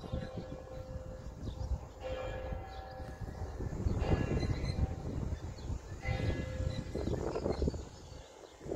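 A church bell tolling slowly, with strikes about two seconds apart, each ringing out and fading. A steady low rumble of wind on the microphone runs underneath.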